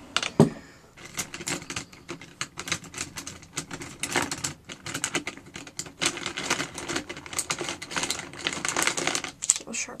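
A thump, then a dense, irregular run of quick clicks and clatter: wooden pencils knocking together as a handful is gathered up.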